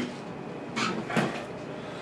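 Brief handling noises: a short rustle a little under a second in and a soft knock just after, over faint room tone.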